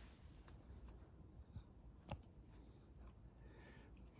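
Very faint scratching of a comb and fingertips on a flaky scalp, dandruff being scratched loose, with a few soft clicks; otherwise near silence.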